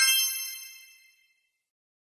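A bright electronic chime sound effect, several tones struck together at once, rings and fades away within about a second. It marks the end of the countdown and the reveal of the correct answer.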